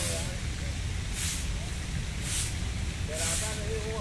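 Short hissing bursts repeating about once a second over a steady low rumble, with faint voices talking near the end.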